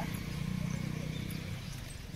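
Steady low rumble of riding along on a bicycle, with wind on the phone's microphone.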